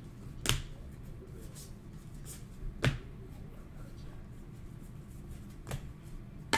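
Trading cards being handled and flipped through: three sharp clicks spaced a few seconds apart, with faint rustling of card stock and a rigid plastic card holder between.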